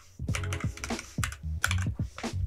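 Typing on a computer keyboard: a quick, uneven run of about ten key presses while code is being deleted and retyped.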